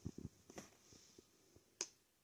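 Near silence with a few faint clicks and one sharper click near the end, from hands handling the phone and book.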